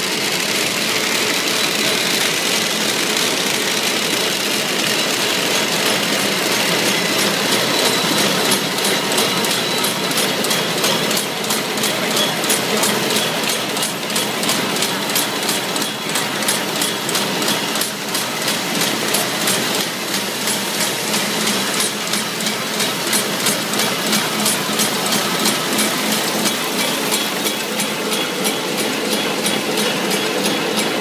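Nanjiang HD-200 roll-fed square-bottom paper bag making machine running at production speed: a steady mechanical clatter with an even beat of about three strokes a second, which stands out more clearly from about eight seconds in.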